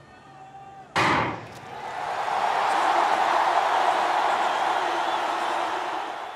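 A starter's gun fires once about a second in, sending sprinters off the blocks. A large stadium crowd's cheering then swells and holds loud.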